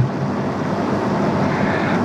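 A steady rushing noise with no voice in it, fairly loud and even throughout.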